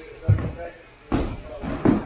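Faint talking in a room, with a single sharp knock or thud a little over a second in.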